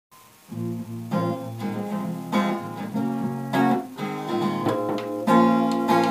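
Acoustic guitar strumming chords, coming in about half a second in and struck again every second or so.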